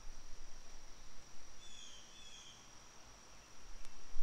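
Faint outdoor ambience: a steady high-pitched whine, with a few faint short bird chirps about halfway through and a low rumble underneath.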